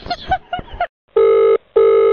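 A voice on the phone line speaking briefly, then two steady beeps of a telephone line tone, each under half a second, with a short gap between them.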